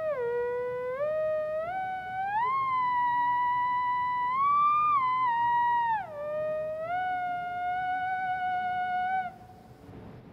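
Theremin playing a slow line of held notes joined by pitch slides: it dips low, climbs in small steps to a long high note that swells a little higher and falls back, then drops and settles on a middle note before cutting off near the end.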